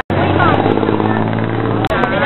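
A steady low motor hum under people talking in a crowd. It starts and stops abruptly with a brief dropout at each end.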